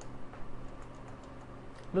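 A few faint computer keyboard keystrokes, mostly in the first second, as a typed command is finished and entered.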